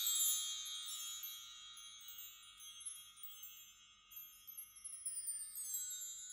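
Sparkling, high-pitched chime sound effect ringing out and fading. About four seconds in, a faint new cascade of shimmering tones slides downward in pitch.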